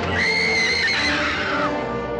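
Dramatic film music with a shrill, high-pitched cry held steady for about a second and then sliding down in pitch.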